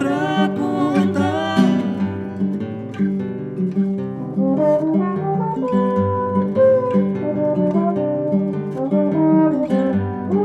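Acoustic guitar played with plucked accompaniment under a trombone playing the melody in held notes, which come in clearly about halfway through.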